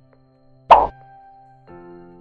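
Background music of held tones with one short, loud pop sound effect a little under a second in.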